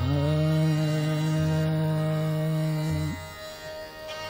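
A male Hindustani classical singer holds one long, steady note for about three seconds over the accompaniment; the note stops suddenly and the accompaniment carries on.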